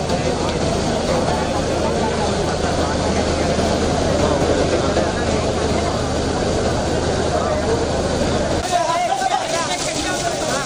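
A steady low engine drone under a dense din of voices and noise. The drone stops suddenly near the end, leaving the voices clearer.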